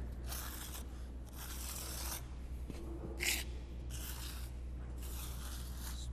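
A plastic spatula scraping a thick sand-and-resin spall repair mix along a concrete floor joint to strike it off level, in about five separate strokes.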